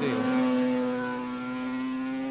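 A 250cc two-stroke Grand Prix racing motorcycle engine running at high revs, one steady note whose pitch climbs slightly as it pulls away.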